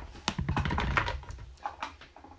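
A quick run of light clicks and knocks, mostly in the first second and a half: a mesh strainer being lifted out of a nested set of plastic mixing bowls and measuring cups.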